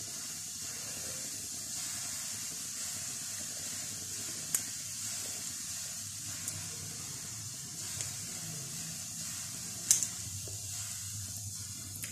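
Gas stove burner hissing steadily under a saucepan of milk, with a couple of light clicks.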